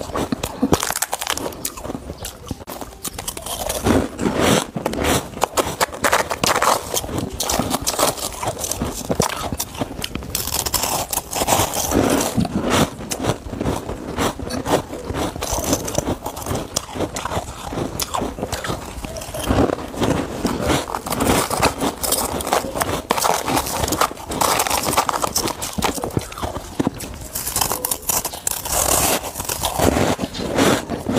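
Close-miked crunching and chewing of powdery freezer frost, a dense crackle of bites, with a spoon scraping the frost in a plastic tub.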